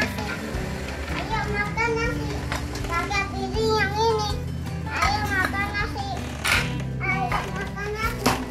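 A toddler babbling and making high, sing-song vocal sounds without clear words, over steady background music.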